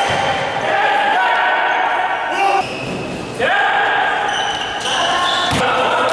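A volleyball struck hard once near the end, echoing in a large gym hall, over players and spectators shouting throughout.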